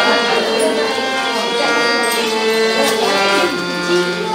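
Indian devotional song music: held melodic notes over sustained tones, some gliding between pitches.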